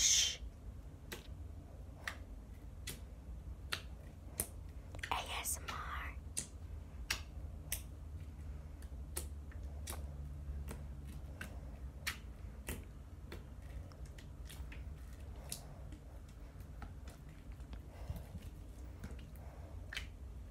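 Fingers pressing and poking a soft, watery fluffy slime, making scattered small clicks and pops about one or two a second, with a brief soft rustle about five seconds in.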